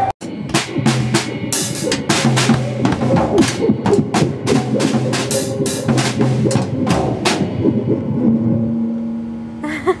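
A young child hitting a drum kit with drumsticks: about seven seconds of loud, irregular hits on the drums, unsteady in rhythm, then the playing stops.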